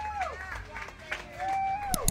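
A woman's voice calling out in drawn-out held notes: one trails off just after the start and another is held near the end, with crowd voices behind.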